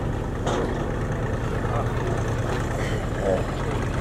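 A steady low engine rumble, like an idling motor, with faint voices in the background.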